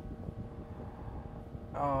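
Low room tone with a faint steady hum in a pause between words; a man's voice comes back with an "uh" near the end.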